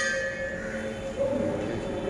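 A struck metal object, ritual brass ware, rings and dies away over the first half-second or so, over a steady low hum.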